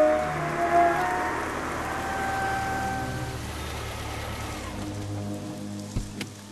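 Heavy rain falling steadily on pavement under a background film score. The melody breaks off about a second in, leaving held notes and a low drone that fade out about five seconds in, with only the rain left after that.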